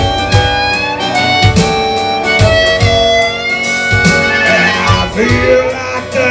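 Harmonica solo with long held and bending notes, over strummed acoustic guitar and a steady drum-machine beat, live through a PA.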